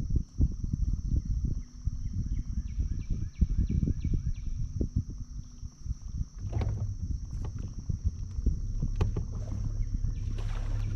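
Wind buffeting the microphone and water slapping around a bass boat's hull, over a steady high insect drone. A short run of quick chirps comes about three seconds in, and a low steady hum joins at about six and a half seconds.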